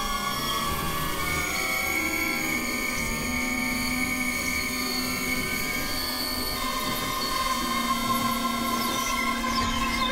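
Experimental electronic drone music: layered synthesizer tones held steady at several pitches, with some dropping out and new ones entering twice. A few faint falling high tones come in near the end.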